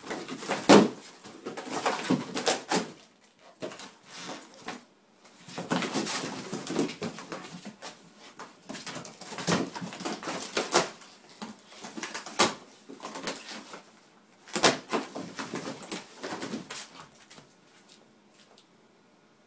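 An English Springer Spaniel ripping and shaking a cardboard box: irregular spurts of cardboard tearing, crumpling and knocking, with brief pauses between bouts.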